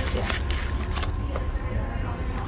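Paper sandwich wrapper crinkling as it is pulled off a sandwich and set down, over a steady low room hum.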